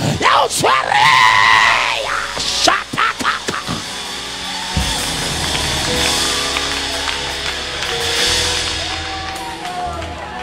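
A preacher's loud shouted exclamations for the first few seconds. The church band's keyboard and bass then come in with held chords under the congregation's clapping and shouting.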